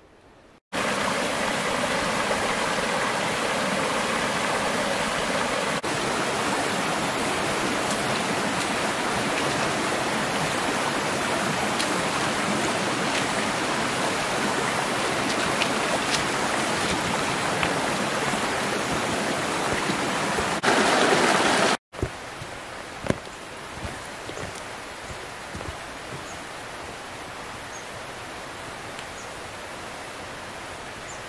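Shallow rocky mountain stream running over stones, a loud, steady rush of water close by. About 22 seconds in it cuts abruptly to a much quieter steady background with a few faint clicks.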